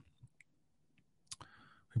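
A pause in speech, nearly silent, broken by a sharp mouth click a little past halfway and a short intake of breath just after it.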